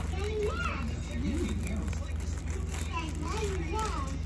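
A young child's high voice making gliding sounds without words, over a steady low hum.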